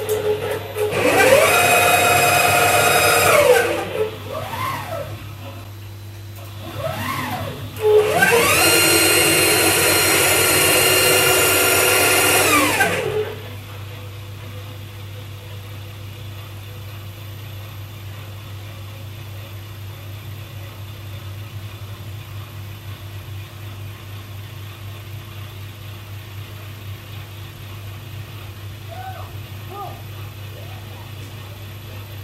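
CNC router's axis stepper motors whining as the gantry makes rapid moves. Each move rises in pitch as it speeds up, holds steady and falls as it slows: one move from about one to three and a half seconds in, two short moves, then a longer one ending about thirteen seconds in. After that only a steady low hum remains.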